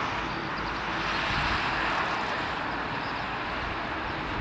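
Jet engine noise from a Boeing 787-8 rolling along the runway: a steady rushing that swells a little in the middle and eases slightly toward the end.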